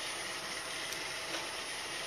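Roomba robot vacuum driving forward under DTMF phone control, its motors giving a steady whirring hiss.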